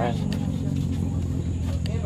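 A steady low motor hum, like an engine running, with a few faint clicks over it.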